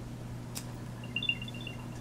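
A short run of faint, high electronic beeps about a second in, typical of an Apple AirTag's chime when it powers up. Before the beeps there is a single light click, and a steady low hum runs underneath.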